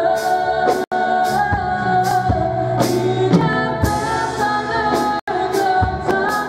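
Live gospel worship singing in French: women's voices leading a praise song over keyboard and a steady beat. The sound cuts out for an instant twice.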